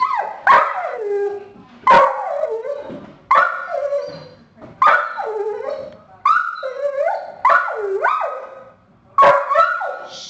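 A dog giving a whining bark over and over, about seven times, each call starting sharply and trailing off into a falling whine. It is the dog's alert bark, the one it reserves for deer.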